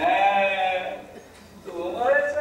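A person's voice holding one drawn-out, high-pitched vowel for about a second, then a short gap before the voice starts again near the end.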